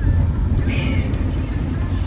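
Car driving through deep floodwater: a steady low rumble, with a brief rush of splashing water about three-quarters of a second in.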